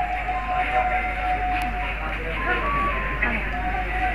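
Accompanying music from a wind instrument playing a slow melody of long held notes, over a murmur of background noise, with one faint knock about a second and a half in.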